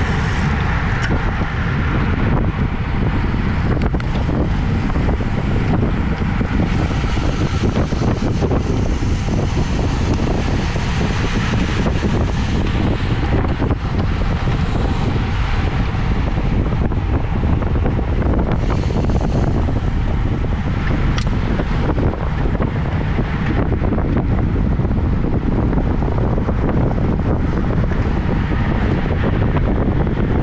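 Steady wind noise on the microphone of a bike-mounted action camera riding at about 26 to 28 mph.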